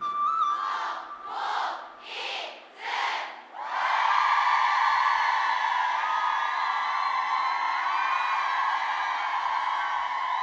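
Audience of fans screaming and cheering as the song ends: the song's last held note dies away in the first second, then come three short surges of shouting, and from about four seconds in a steady, high-pitched crowd scream.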